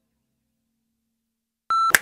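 Near silence as a last faint note dies away, then a short, loud electronic beep, one steady tone that cuts in suddenly near the end.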